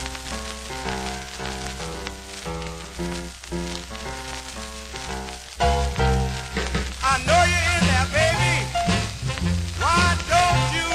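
Instrumental intro of a 1955 rhythm-and-blues record played from a worn 45 rpm single, with surface crackle. It opens with a repeating chord figure; a little over halfway through the full band comes in louder, with a lead instrument bending its notes.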